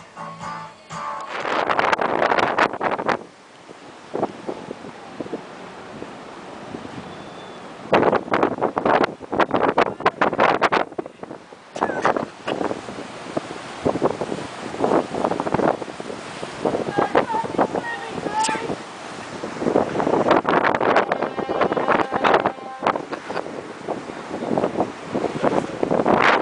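Wind buffeting the microphone in irregular gusts over the steady rush of rough sea water along a cargo ship's hull, heard from the open deck.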